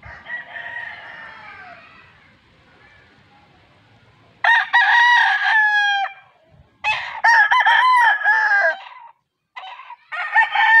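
A Red Kelso x Gilmore Sonny Lagon gamecock crows loudly twice, about four and a half seconds in and again about seven seconds in, each crow lasting about two seconds. Fainter calls come in the first two seconds.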